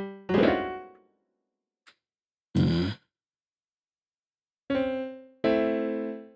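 Software acoustic grand piano (Xpand!2) playing short chords one at a time, each struck and left to die away. About two and a half seconds in there is a brief, noisier hit, then a pause before two more piano chords near the end.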